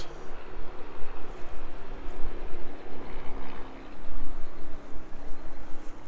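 A small light aircraft passing overhead, its engine a steady drone, with wind rumbling on the microphone.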